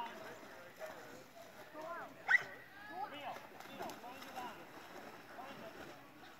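Indistinct voices of people nearby, chatting in short phrases, with one short, sharp, loud sound a little over two seconds in.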